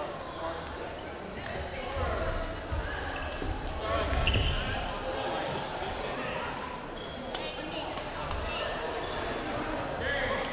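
Echoing ambience of a busy gymnasium during badminton play: background chatter of players and spectators, with scattered sharp knocks and thuds from play.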